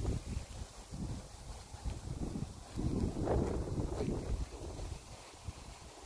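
Breeze buffeting the microphone: a low, uneven rumble that comes in gusts, strongest about halfway through.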